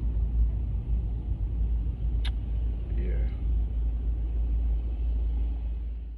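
Car driving, heard from inside the cabin: a steady low road and engine rumble, with a single sharp click about two seconds in.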